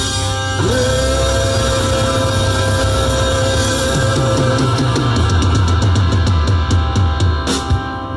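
Live rock band with guitars, bass and drums playing the drawn-out ending of a rockabilly song: a long held note over a moving bass line, then fast drum and cymbal hits crowding together toward the end.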